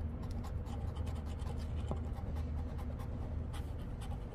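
Coins scraping the coating off scratch-off lottery tickets: a steady, rapid rasp of many short strokes, two tickets being scratched at once.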